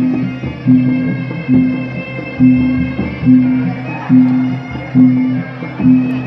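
Traditional music: a low, pitched drum-like beat repeating a little more than once a second, under a steady, sustained high melody line.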